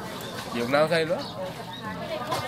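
A person's voice speaking briefly, from about half a second in to just past a second, over low background noise.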